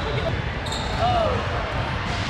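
Basketballs bouncing on a hardwood gym floor, with indistinct voices in the background.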